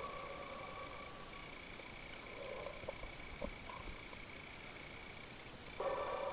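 Faint, muffled underwater sound from a cave dive: a low steady hum with a couple of tiny clicks about three seconds in.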